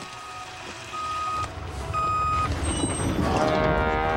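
A truck's reversing alarm beeping three times, about once a second, over a low engine rumble that grows louder. About three seconds in, a louder droning sound with several steady tones comes in as the truck closes in.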